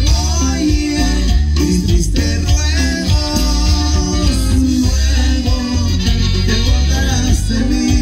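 A dance band playing a cumbia at full volume, with a heavy, steady bass line.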